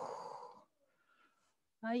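A woman's breathy exhale, like a sigh, fading out within the first half-second, followed by near silence until her voice starts again near the end.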